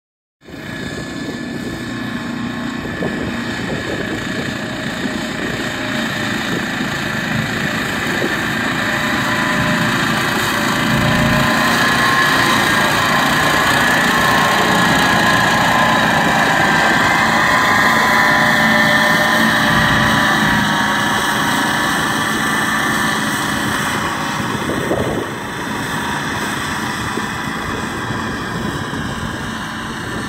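A towed ATV flail mower running, its own small petrol engine and flail rotor whirring steadily as it cuts rough grass, along with the quad bike's engine that pulls it. The sound grows louder toward the middle and drops about five seconds before the end.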